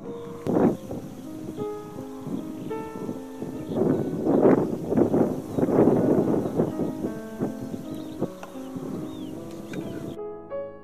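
Slow piano music, overlaid with gusty rushing noise that is loudest in the middle. A few faint high chirps come near the end.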